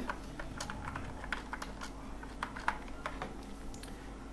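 Computer keyboard keys being typed in a quick, irregular run of light clicks as a phone number is keyed in.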